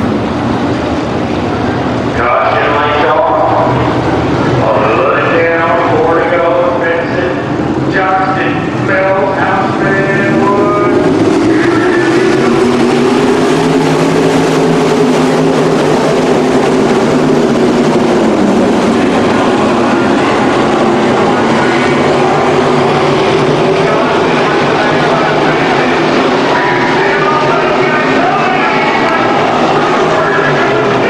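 A field of winged sprint cars racing on a dirt oval, their engines running hard at high revs, the pitch swelling and sagging as the pack goes around the track.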